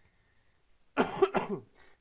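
A person coughing: two quick coughs about a second in, followed by a fainter one.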